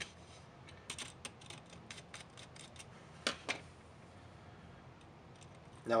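Faint light clicks and taps, about a dozen in the first three and a half seconds, with the two loudest a little past three seconds, from hands handling a DC power-supply module and its test wire.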